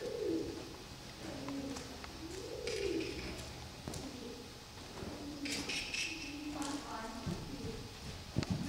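Pigeons cooing, a run of low, rising-and-falling calls repeated about every second.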